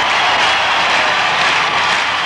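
Loud, steady hiss of noise with no pitch or rhythm, louder than the talk before it.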